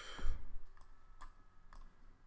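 Computer mouse clicking three times, spaced about half a second apart. A short, louder noisy rush at the very start.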